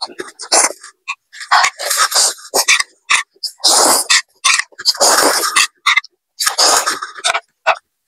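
A person slurping ramen noodles, four long loud slurps about a second and a half apart, with short wet smacking sounds between them.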